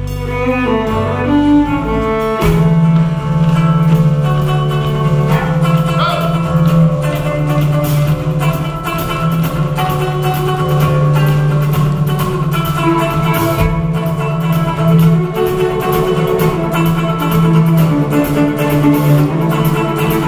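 Fiddle and acoustic guitar playing a folk tune together.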